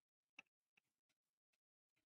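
Near silence, with a few faint short clicks, the clearest about half a second in.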